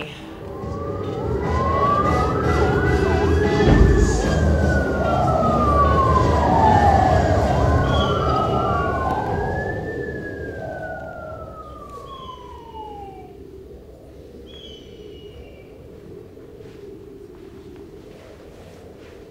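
A wailing emergency-vehicle siren played as a sound effect over a rumble of traffic, with slow overlapping rises and falls in pitch. It swells, with a thump about four seconds in, then fades away by about thirteen seconds in. A few short high chirps come near the end.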